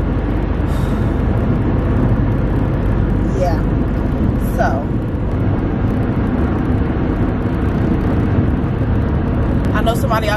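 Steady road and engine noise inside a moving car's cabin at highway speed, with a brief vocal sound about four and a half seconds in.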